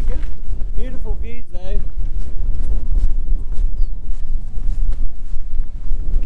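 Strong wind buffeting the camera microphone, a constant low rumble that surges with the gusts. A person's voice makes a couple of short sounds about one to two seconds in.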